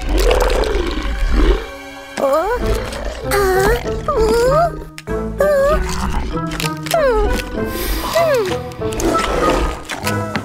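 Background music with wordless cartoon vocalizations: a low growl in the first second or so, then a run of gliding, rising-and-falling cries.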